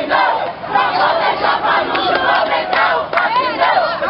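A crowd of protest marchers shouting together, loud and unbroken.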